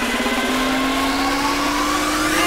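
Electronic dance music build-up: a sustained synth tone slowly rising in pitch, a riser leading toward the drop.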